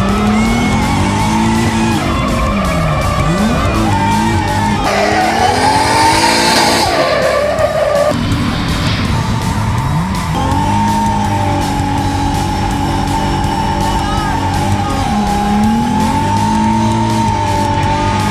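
A drift car's engine at high revs, its pitch dropping and climbing again several times as the car slides, with tyre squeal. Background music plays over it.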